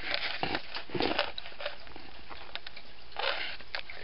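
Camera handling noise: scattered faint clicks and rustles as the camera is moved and turned, with a short breathy rush about three seconds in.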